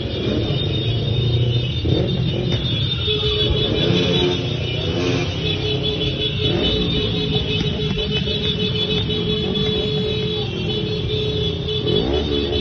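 Motorcycle and scooter engines running together in a slow-moving convoy, with engines revving up and down now and then.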